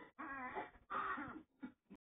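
Faint voice-like sounds in three or four short, wavering phrases.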